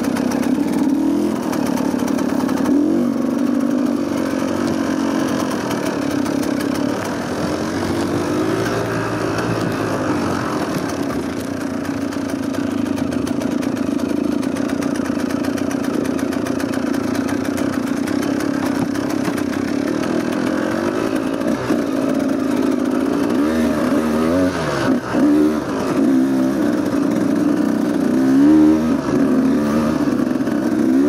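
Dirt bike engine running as the bike is ridden along a rough trail, its pitch rising and falling with the throttle, with more rapid revs in the last few seconds.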